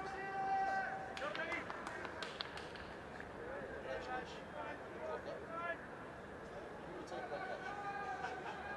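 Ground-microphone ambience at a cricket stadium: distant voices of players and spectators calling and chattering over a steady background hum, with one long held call in the first second.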